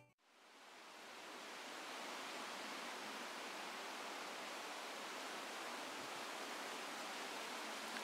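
Steady outdoor ambient hiss that fades in over the first second or two, an even noise with no distinct events.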